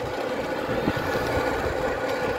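Steady road and traffic noise from riding in a slow open vehicle along a street, with faint steady tones running through it.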